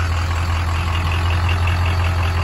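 Ford Excursion's 6.0-litre Power Stroke V8 diesel idling with a steady low drone.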